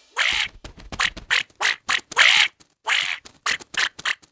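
Cartoon duckling quacking: about a dozen short quacks in quick, uneven succession.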